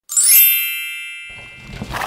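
A bright, bell-like chime struck once, its ringing tones fading away over about a second and a half: a read-along page-turn signal. A noisy sound starts under it in the second half.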